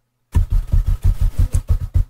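Rapid keystrokes on a computer keyboard, about six or seven a second, each with a dull thump: a key pressed over and over to step the cursor from field to field.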